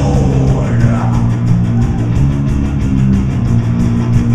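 Rock band playing live: distorted electric guitar and bass holding a heavy riff over drums, with a steady run of fast cymbal hits, about eight a second.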